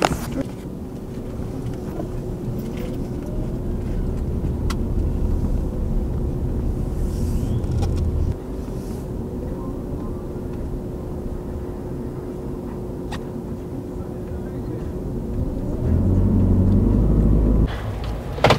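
Inside the cabin of a minivan under way: low road and engine rumble builds as it gathers speed, drops off sharply about eight seconds in, and builds again near the end, over a faint steady hum.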